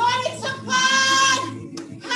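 A woman singing a gospel worship song solo, a few short notes and then one long high note held for most of a second.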